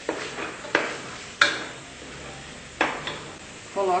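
Wooden spoon stirring a sautéing beef and tomato-onion mixture in an aluminium pot, with four sharp knocks of the spoon against the pot over a low sizzle.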